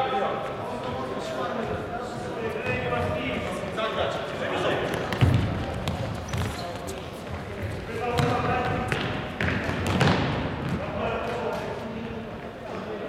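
Futsal ball being kicked and bouncing on a wooden sports-hall floor, with players shouting and calling, all echoing in the hall. Sharp kicks stand out about five seconds in and again about ten seconds in.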